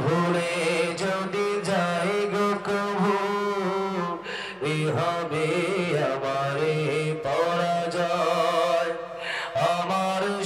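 A man's solo melodic chant in a qari's style, long held notes with ornamented turns, sung into a PA microphone. He pauses for breath about four seconds in and again just before the end.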